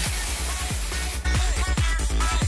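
Aerosol can of Batiste dry shampoo spraying onto hair in one hiss lasting just over a second, over background electronic music with a steady beat.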